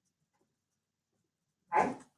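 Silence, then near the end one short voice-like sound lasting a fraction of a second.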